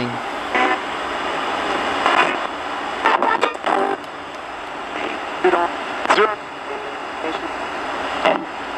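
RadioShack 20-125 portable radio hacked to sweep stations nonstop as a ghost box: steady static hiss broken every second or so by brief snatches of broadcast voices as it passes stations.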